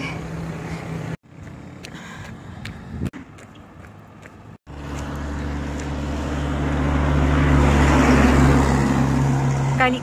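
A motor vehicle passing on the road: a steady engine hum under road noise that swells to a peak a couple of seconds before the end and then eases off. Before it come a few seconds of quieter sound broken by several abrupt cuts.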